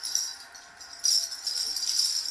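A small handheld toy rattle being shaken, jingling in a short burst at first and then more steadily from about a second in.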